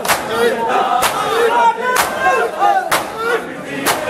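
A crowd of men doing matam, striking their bare chests with their palms in unison, a sharp slap about once a second. Many men's voices chant and shout between the strikes.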